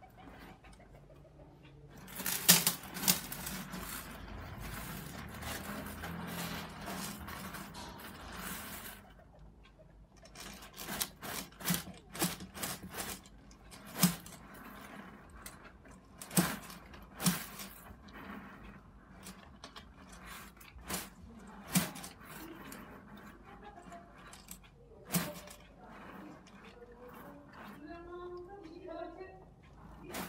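Loose gravel substrate crunching and clicking under a savannah monitor swallowing a whole rat: a scraping rustle lasting several seconds starts about two seconds in, then irregular sharp clicks follow.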